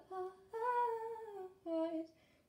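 A woman humming a tune without words in three notes: a short one, a longer one that slides slightly down, then another short, lower one.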